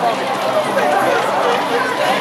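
Many overlapping voices of a large group of marchers talking and calling out together as they walk, steady and fairly loud.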